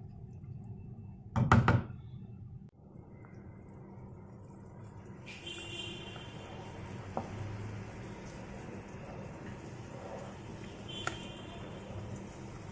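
A pot of beef soto broth coming to the boil: a steady bubbling hiss that grows fuller and brighter about five seconds in. A single sharp knock about a second and a half in.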